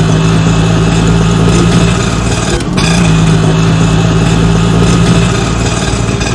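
Engine of a three-wheeled auto rickshaw (bajaj) running steadily, with a brief dip about two and a half seconds in.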